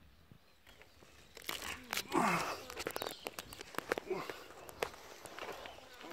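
Scuffing, crackling and knocking of a person clambering out of a hollow tree trunk over dry bark and leaf litter, starting about a second and a half in, with a brief vocal sound about two seconds in.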